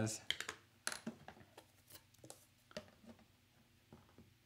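Faint, irregular light taps and clicks of a small foam ink blending tool dabbing ink onto a clear rubber stamp, several spaced through the stretch.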